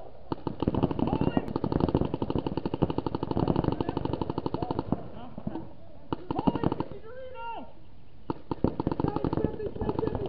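Several paintball markers firing rapid strings of shots at once, in bursts with two short lulls in the middle. Players shout during the lulls.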